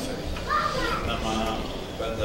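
Indistinct talking at normal level, with a high-pitched voice that sounds like a child's for about a second near the middle.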